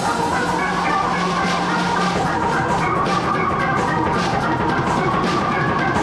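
Live band playing an instrumental gospel jam: drum kit and hand percussion with a struck metal bell keep a steady rhythm under sustained organ and keyboard chords.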